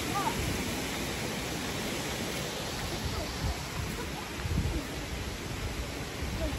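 Flowing water making a steady, even rush, with irregular low rumbles.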